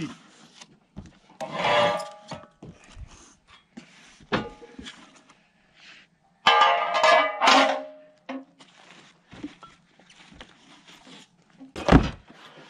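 Steel parts of a Woodland Mills HM122 portable sawmill being unpacked from cardboard boxes: cardboard rustling and scraping, with metal pieces clanking and ringing briefly, loudest about six and a half seconds in.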